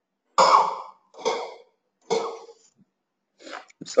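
A man coughing three times, about a second apart.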